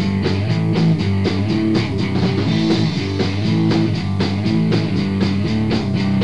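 Punk band playing a song in rehearsal: electric guitar chords, bass and drum kit at a fast, steady beat, just after the count-in.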